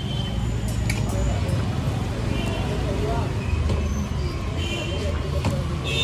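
Steady low rumble of street traffic, with indistinct voices and a few faint clicks over it.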